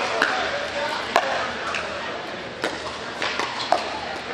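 Pickleball paddles hitting the plastic ball: several sharp pops about a second apart, ringing in a large hall over a murmur of voices.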